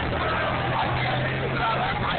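Motor vehicle engine running steadily at a low hum, which stops near the end, under a crowd's chatter.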